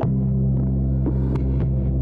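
A steady low hum whose pitch shifts right at the start, with a few light clicks about a second in from plastic film-developing tanks being handled.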